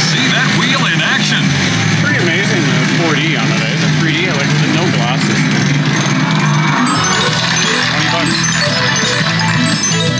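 Wheel of Fortune slot machine bonus-wheel music and sound effects over casino background chatter. About seven seconds in, as the wheel lands on a win, a quick run of repeating electronic tones begins: the machine counting up the win.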